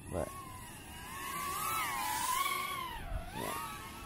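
Brushless motors of a small 85 mm whoop-style FPV quadcopter whining in flight, the pitch sweeping up and down with throttle, loudest about halfway and dipping briefly near the end.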